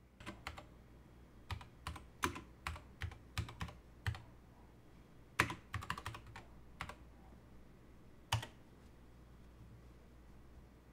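Typing on a computer keyboard: irregular keystrokes in short bursts, then one lone keystroke about eight seconds in.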